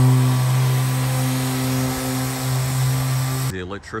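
Handheld electric random orbital sander running steadily against a door being sanded down, a loud even hum with hiss, stopping abruptly near the end.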